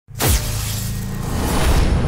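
Cinematic logo sting: a sudden hit about a quarter of a second in, with a high hiss that fades away, over a steady low bass drone.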